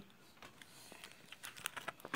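Clear plastic coin-pocket sheet in a ring-binder coin album being handled and lifted to turn the page: a faint run of crinkling clicks, more frequent in the second half.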